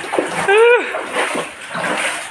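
Water splashing, with one brief high-pitched cry that rises and falls about half a second in.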